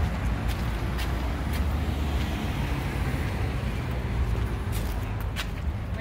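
Street traffic: a steady low rumble of passing cars, with a few light clicks scattered through it.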